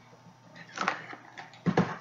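Two brief rustling handling noises from a food pouch being picked up and opened, one about a second in and a louder one near the end.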